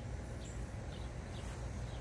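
Quiet outdoor background: a steady low rumble with a few faint, short high bird chirps.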